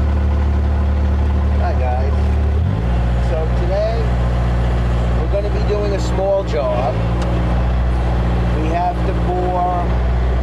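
Bobcat S185 skid-steer's diesel engine running steadily, heard from inside its cab; about three seconds in its engine note shifts slightly in pitch.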